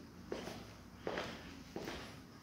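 Footsteps on a wooden floor: three steps about three quarters of a second apart, each a short knock trailing into a brief scuff.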